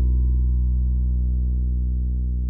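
A single low musical note with a stack of overtones, held and slowly fading as it rings out at the end of a song.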